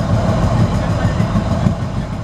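Low, steady rumble of a train running along the track.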